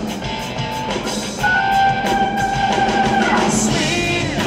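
Live blues-rock band playing loud: electric guitars over a drum kit, with a long held high note starting about a second and a half in that wavers near the end.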